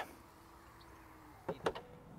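Faint, steady hum of the Audi RS6 Avant's electric tailgate motor as the tailgate powers down, followed by a couple of short clicks about one and a half seconds in.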